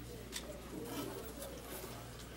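Quiet room tone with a steady low electrical hum and a faint click about a third of a second in.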